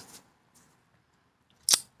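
A pause in a man's speech: his word trails off at the start, then near silence, broken near the end by one short, sharp mouth sound as he gets ready to speak again.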